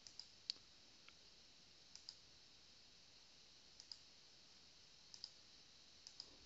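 A handful of faint computer mouse clicks, mostly in quick pairs about two seconds apart, over near-silent room tone.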